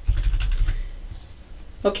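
Computer keyboard keystrokes: a few quick taps in the first half-second or so, over a low thump, then quiet typing noise fading out.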